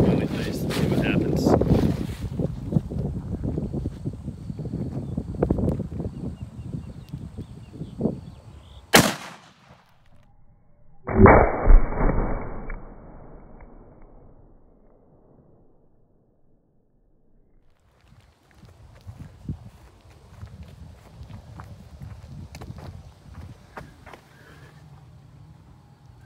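A .270 rifle fired once at a compressed earth block wall: a loud report about eleven seconds in that trails off over a couple of seconds, with a sharp crack shortly before it. Wind noise on the microphone in the first two seconds.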